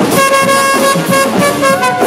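Live brass band (trumpets, trombones and sousaphone with a drum kit) playing, the horns holding repeated sustained notes over a steady drum beat, with one note sliding upward near the end.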